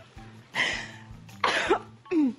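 A woman's breathy, cough-like bursts of laughter, two of them, about half a second and a second and a half in.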